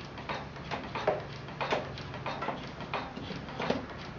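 Treadle-driven potter's wheel turning, with a steady low rumble and short ticks about two or three a second as the treadle is worked.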